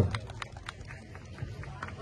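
A pause in a man's amplified speech: low outdoor background with several faint sharp clicks in the first second and another near the end.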